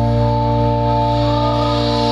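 Live rock band holding a sustained chord: steady organ-like keyboard tones over a held bass note.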